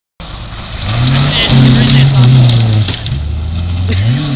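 Rally car engine running hard at high revs on a gravel stage, then dropping in pitch about three seconds in as it comes off the throttle for a dirt corner.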